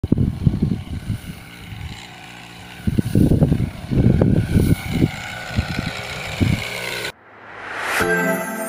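Small engine of a backpack motorized crop sprayer running steadily, with wind buffeting the microphone in irregular low gusts. It cuts off abruptly about seven seconds in.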